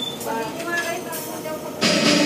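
Steady background noise with faint voices through a karaoke microphone setup. Near the end a karaoke backing track starts suddenly and loudly.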